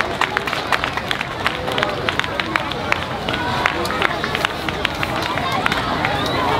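Hand clapping: a run of sharp, uneven claps, several a second, with crowd voices underneath.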